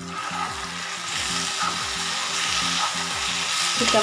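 Chicken pieces in a thick spiced masala sizzling in hot oil in a pan while a flat spatula stirs and turns them. The sizzle gets louder about a second in.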